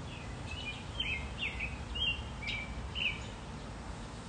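A small bird chirping outdoors: a run of about seven short, high chirps over the first three seconds, over a low steady background noise.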